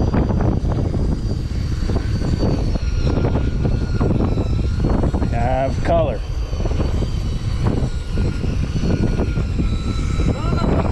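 Steady rumble of wind and a running motor while a conventional jigging reel is cranked by hand, with a thin high whine held throughout. A short wavering call or voice-like sound rises and falls about five and a half seconds in.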